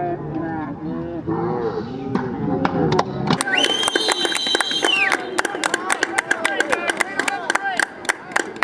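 Sideline spectators shouting, then sharp clapping, with a steady high whistle lasting about a second and a half, a little before the middle.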